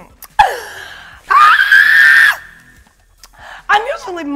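A woman's excited scream: a short falling cry, then a loud, high-pitched scream held at one pitch for about a second.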